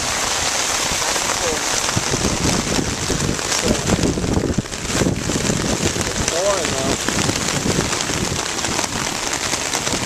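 Heavy rain pouring down steadily, hitting a tarp overhead and splashing on the surface of a lake.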